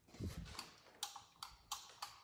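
A plastic wall light switch clicked several times, three sharp clicks in about a second after a dull bump at the start. The switch is being tried on a dead light that does not come on.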